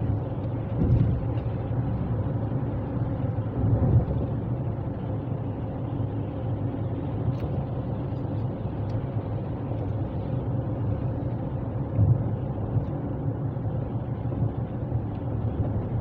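Steady low rumble of road and engine noise heard inside a car cruising on a freeway, with a few brief louder thumps.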